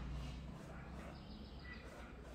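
Faint background noise: a steady low hum with a few brief, high-pitched chirps, one at the start and one near the end.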